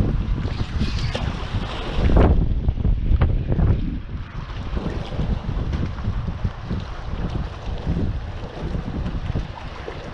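Strong wind buffeting the microphone, with a gust about two seconds in, then easing after about four seconds, over choppy water lapping below.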